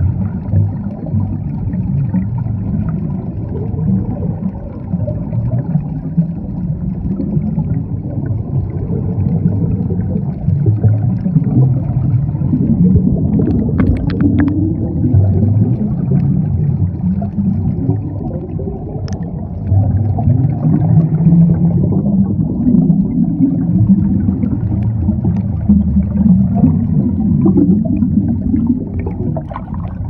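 Muffled underwater sound picked up through a camera housing: a steady low rumble of moving water, with several slow rising drones and a few sharp clicks about halfway through.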